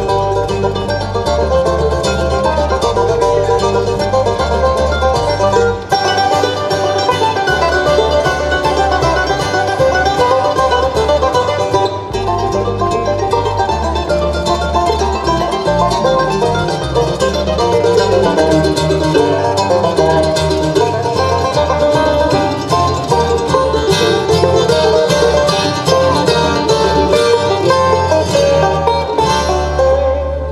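Acoustic bluegrass band playing an instrumental passage without singing: banjo, mandolin and acoustic guitar picking over an upright bass keeping a steady beat.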